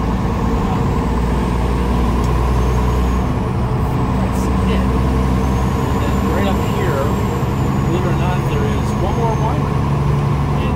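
A semi-truck's diesel engine running steadily under the cab as it drives at low speed, with road noise; the low engine note shifts a little about two-thirds of the way through.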